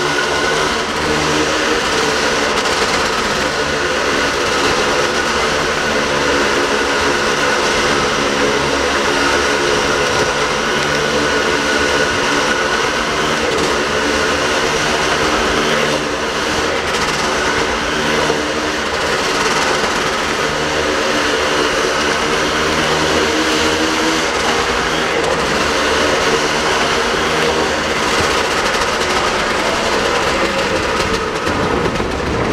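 A rider circling the vertical wooden wall of a Wall of Death drome, wheels rumbling steadily and loudly over the planks with the drome resounding.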